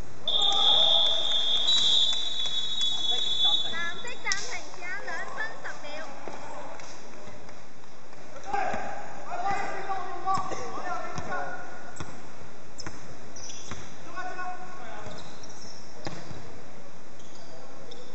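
Indoor basketball game on a hardwood court: the ball bouncing, sneakers squeaking, and players calling out. A high, steady signal tone, a whistle or buzzer, sounds for about the first four seconds.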